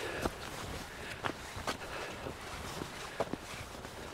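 Footsteps of a person walking along an outdoor path, at about two steps a second.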